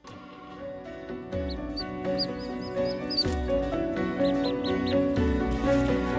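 Nature-documentary soundtrack music with held notes, slowly growing louder. Over it come two runs of short high chirping animal calls, about two seconds in and again about four seconds in.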